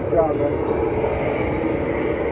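Steady drone of airplane cabin noise from the aircraft's running engines and air systems, with a short spoken word near the start.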